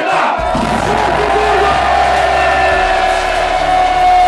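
Live hip-hop concert heard from within the crowd: the audience cheering and shouting over loud music. One long note is held throughout above a steady deep bass.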